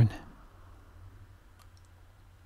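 The tail of a man's spoken word at the very start, then quiet room tone with a few faint clicks a little over a second and a half in.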